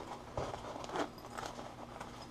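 Zipper on a fabric soft case being pulled open in a few short scratchy runs, with light handling rustle of the case.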